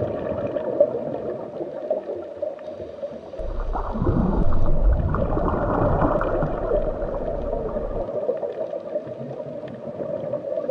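Underwater ambience: a steady rush and gurgle of water with a held hum, swelling into a louder, rumbling surge from about three and a half seconds in until about eight seconds.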